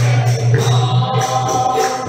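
Group devotional singing of a Sai bhajan, voices together over a steady beat of jingling hand percussion.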